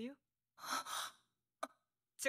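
A person's breathy exhale like a sigh, about half a second long, between pieces of speech, followed about half a second later by a very short faint sound.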